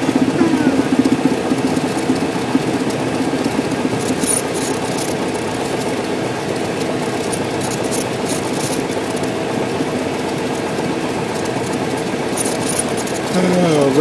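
Light aircraft's piston engine running steadily at low taxi power, heard from inside the cockpit with the propeller turning. A few short clicks come in the middle, and near the end a louder sound slides down in pitch.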